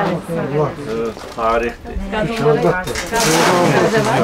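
Several people talking at once, their voices overlapping, with a louder rush of noise about three seconds in.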